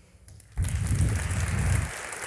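Audience applauding, breaking out suddenly about half a second in and holding steady.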